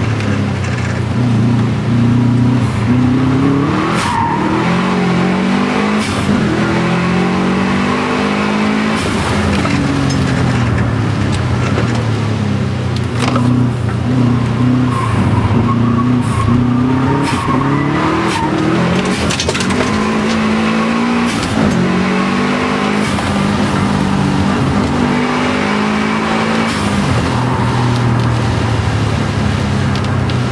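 Subaru Impreza WRX STI's turbocharged flat-four engine driven hard, heard from inside the cabin: the pitch climbs through each gear and drops at every shift or lift, over and over.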